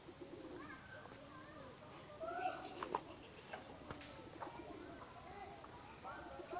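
Faint bird calls and distant voices, with two light clicks about three and four seconds in.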